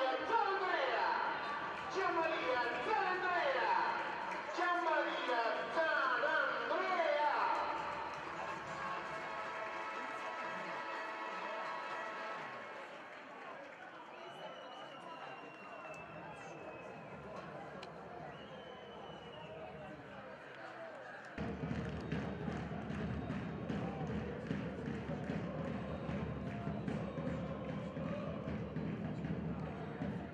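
Football match sound: excited voices for the first several seconds, fading away. About two-thirds of the way in, live pitch sound cuts in sharply, with repeated sharp kicks of the ball and players' shouts over the stadium background.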